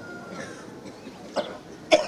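A short cough into a hand-held microphone about one and a half seconds in, amplified through a horn loudspeaker over low background noise.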